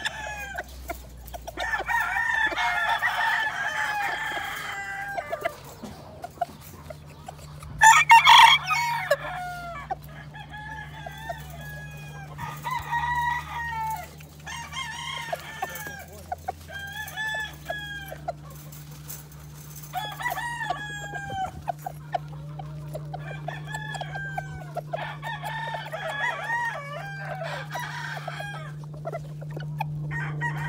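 Gamefowl roosters in pens crowing and clucking over and over, one call after another every second or two, the loudest call about eight seconds in.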